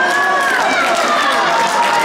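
Children's voices shouting and calling out at a high pitch, with some cheering, echoing in a large sports hall.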